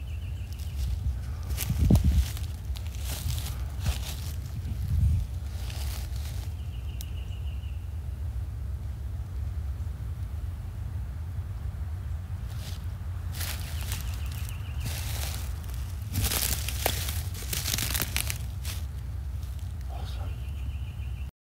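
Footsteps crunching through dry leaf litter and pine needles, in several spells of walking with pauses between, over a steady low rumble. Two louder low thuds come early on the steps.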